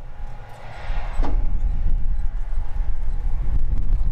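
Wind buffeting the microphone outdoors: a loud, uneven low rumble that picks up just under a second in, with a single short click about a second in.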